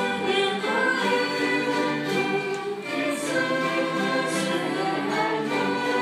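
Church string orchestra with violins playing a slow hymn, with many voices singing along in sustained notes.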